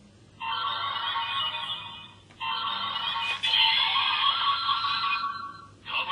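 DX Ultra Z Riser toy playing electronic music and sound effects through its small built-in speaker, in phrases with short breaks.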